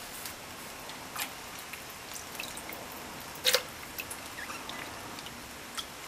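Scattered small drips and clicks from wet soaked broad beans in a pressure cooker pot, with one sharp click about halfway through.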